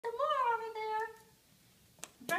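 A toddler's high-pitched, drawn-out vocal call: one long vowel of just over a second that rises slightly, then settles and fades out.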